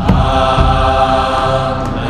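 Voices chanting a mantra on one long held note.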